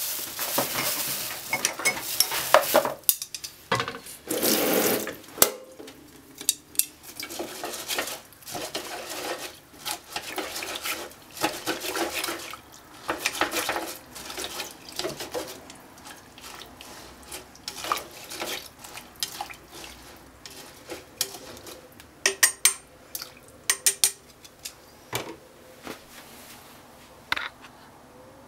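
Soaked rice, broth and ingredients being stirred in a rice cooker's inner pot: continual scraping and wet stirring with frequent clinks of a utensil against the pot, busiest in the first few seconds, and a run of sharp clinks near the end.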